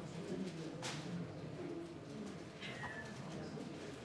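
Indistinct low murmur of several people talking quietly in a large room, with a sharp click just under a second in and a short squeak a little before three seconds.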